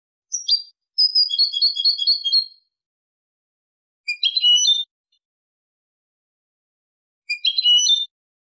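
European goldfinch (jilguero) singing Málaga-style song in separate high phrases with dead silence between them: a short call, then a fast trill of repeated notes lasting about a second and a half, then two short warbled phrases, the last one near the end.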